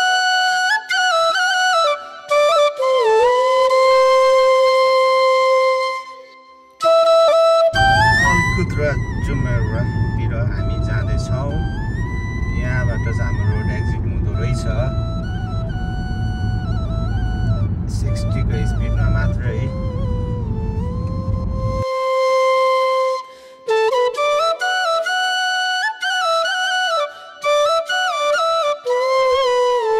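Background music: a Nepali song carried by a bamboo flute melody of long held notes. A fuller, lower accompaniment comes in about eight seconds in and drops out about three-quarters of the way through.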